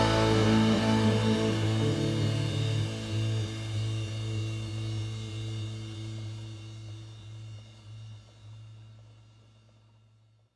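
Music: the final chord of a blues-rock song ringing out, a low bass note and higher sustained notes slowly dying away, fading to silence about nine seconds in.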